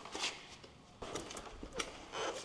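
Quiet handling noise: a short rustle, then a few light clicks and ticks as multimeter test probes are moved and set on connector pins.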